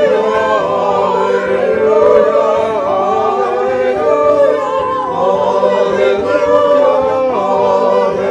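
A choir singing a slow piece with long held notes.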